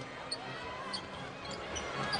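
Basketball being dribbled on a hardwood court against steady arena crowd murmur, with a few short high squeaks.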